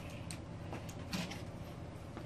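Quiet garage room tone with a steady low hum and a few faint clicks and taps, one a little louder about a second in.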